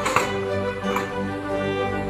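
Background music with sustained notes, with one sharp tap just after the start.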